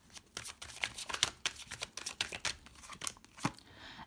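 Tarot cards being shuffled and flicked through in the hands: a quick, irregular run of soft card clicks and slides.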